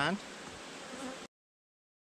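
Honeybees buzzing steadily around an open hive for about a second, then the sound cuts off suddenly.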